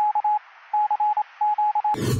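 Morse-code-style telegraph beeping: a single high tone keyed on and off in quick runs of short and longer beeps, pausing briefly about half a second in and then running on. A loud rushing whoosh cuts in right at the end.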